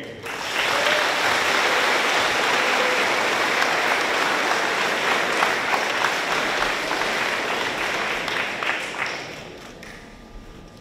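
Audience applauding, a steady round of clapping that dies away near the end.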